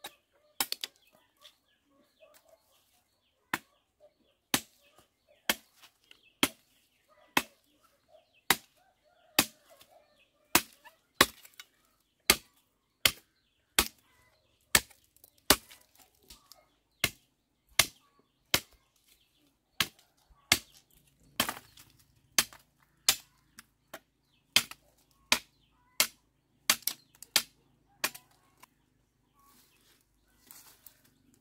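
A hooked machete chopping into the green wood of a sapling's trunk: a long run of sharp chops, about one a second, coming faster in the last few seconds.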